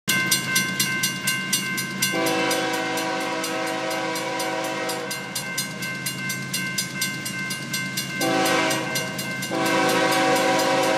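A grade-crossing warning bell ringing rapidly, about five strokes a second. Over it an approaching diesel freight locomotive's air horn blows a long chord-like blast starting about two seconds in, then sounds again near the end as it nears the crossing.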